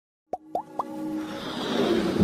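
Three quick rising 'plop' sound effects about a quarter second apart, then a swelling whoosh that builds up: the sound design of an animated logo intro.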